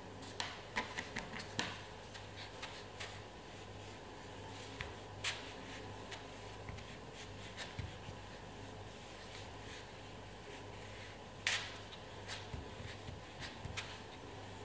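Faint scattered clicks, taps and light rubbing of hands working a metal ball tool over gumpaste leaves on a foam pad, with one sharper click near the end, over a low steady hum.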